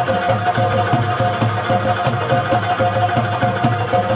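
Instrumental Pashto rabab-mangay music: a rabab plucked over a mangay pot drum struck by hand in a quick, steady rhythm, with a held ringing tone underneath.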